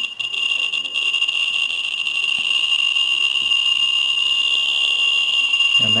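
Ludlum 12 rate meter's audio speaker sounding for a CDV-700 Geiger probe held on a hot caesium-137 particle: at some 32,000 counts per minute the clicks merge into a steady high-pitched whine, growing slightly louder. With the beta window closed, this is gamma radiation of roughly 50 to 60 milliroentgen per hour.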